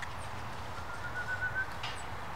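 A bird calling: a short run of about seven quick notes, rising slightly in pitch, about a second in.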